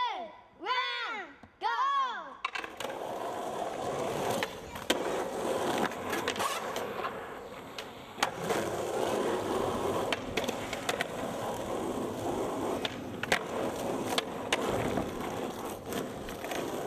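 Skateboard wheels rolling on asphalt, with sharp clacks of the board popping and landing, the loudest about five seconds in and again near the end. It starts with three sing-song calls, each rising then falling in pitch, before the rolling sets in.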